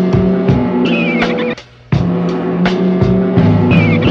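Boom bap hip-hop instrumental beat: drum hits over a looping bassline and sampled melody. A high, wavering squeal falls in pitch about a second in and again near the end. The whole beat cuts out for a moment about a second and a half in.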